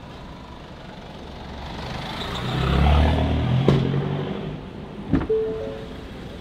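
A motor vehicle passes by the parked car, its engine and tyre noise swelling to a peak about halfway through and fading away, with a sharp click just after. Near the end a car door clunks open, followed by a few short beeping tones.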